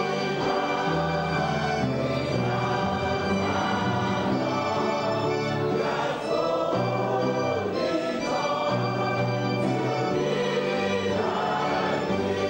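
Congregation and choir singing a hymn together with instrumental accompaniment, holding long notes that step from pitch to pitch.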